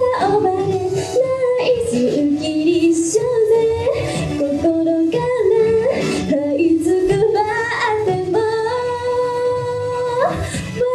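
A young woman singing a pop song solo into a handheld microphone, holding a long note near the end.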